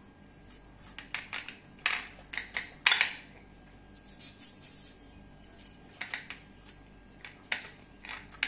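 Crushed ice scooped by hand from a steel mixer jar and pressed into a small glass: scattered scrapes and clinks, the loudest about three seconds in.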